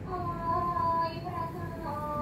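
A high voice singing a Thai classical vocal line for the Chui Chai dance, holding long notes that waver and glide slowly between pitches.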